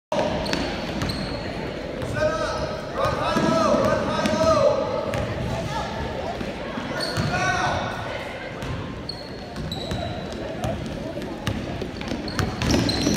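Basketball being dribbled on a hardwood gym floor during a youth game, with short sneaker squeaks and voices shouting across the court at about two and seven seconds in.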